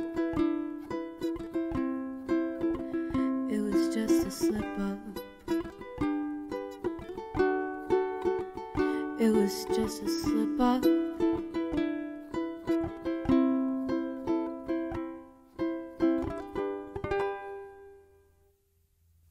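Solo ukulele playing the closing instrumental bars of a song, chords strummed and picked. Near the end it thins out to a last chord that rings out and stops.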